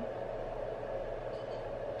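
Steady background hum with an even band of hiss, unchanging throughout, with no distinct events.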